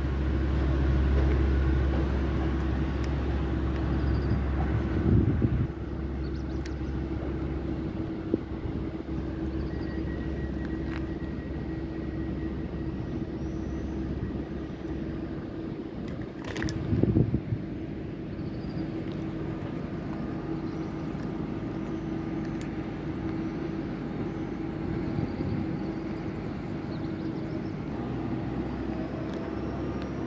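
Railway station ambience: a steady low hum, heavier for the first several seconds, with one loud clank about 17 seconds in. Near the end comes the rising whine of an electric multiple unit pulling into the platform.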